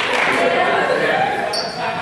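Many players' voices calling and chattering in a reverberant sports hall, mixed with footsteps hitting the hard court floor as they run.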